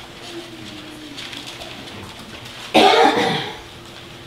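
A single loud cough about three seconds in, with a short rough voiced tail, against quiet room tone.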